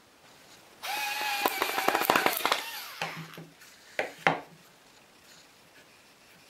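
A turned wooden peg squeaking as it is pressed and twisted into a tight hole in a wooden board, with crackling clicks. The squeak starts about a second in, lasts about two seconds and drops in pitch at the end. Two sharp wood-on-wood knocks follow about four seconds in.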